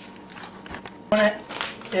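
Plastic bag of ground venison crinkling faintly as it is picked up and handled, with a soft knock partway through. Just after a second in, a short loud spoken word.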